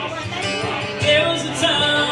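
Acoustic guitar strummed live as a song's accompaniment, with harder strums about a second in and again just after.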